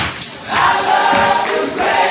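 A large group of voices singing a gospel song together live, with hand claps and shaken percussion keeping the beat; the singing breaks briefly between phrases just after the start.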